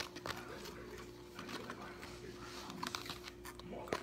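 Metal fork stirring and scraping flour and baby oil in a plastic container, a run of light, irregular clicks and taps. A faint steady hum sits underneath.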